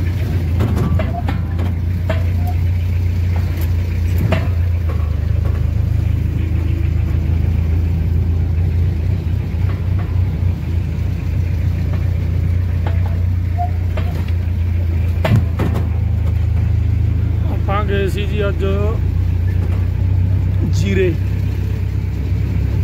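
Vehicle engine running with a steady low hum while driving slowly, heard from inside the cab, with scattered knocks and rattles.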